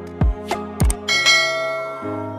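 Animated subscribe-button sound effects: two quick falling-pitch blips, then a bright bell chime about a second in that rings on and fades, as the notification-bell icon rings.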